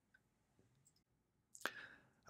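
Near silence, with one short click near the end.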